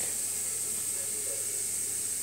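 A steady hiss with a thin, high, steady tone above it.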